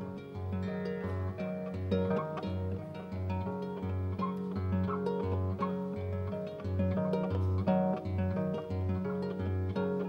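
Concert pedal harp being plucked: a low bass note repeats steadily about one and a half times a second under a pattern of quickly decaying higher notes.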